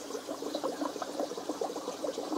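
Aquarium air stone bubbling: a steady stream of small irregular bubble pops and trickling water.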